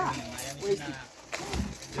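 A voice talking, with a short dull thud about one and a half seconds in as a person drops onto a plastic-wrapped bed mattress.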